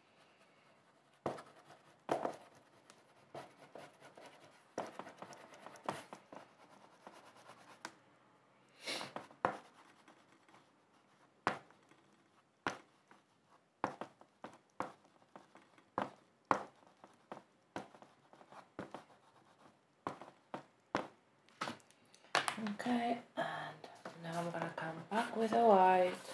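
Oil pastel rubbed and scratched on paper in short, irregular strokes, grey worked over black to blend the dark tones.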